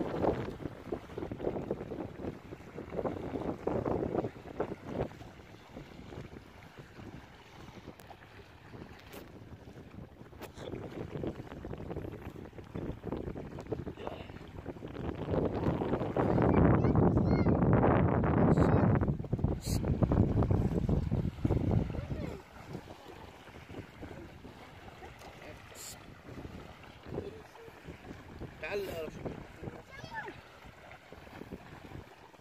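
Small waves lapping on a sandy shore, with wind buffeting the microphone. The noise swells into a long, louder stretch about halfway through.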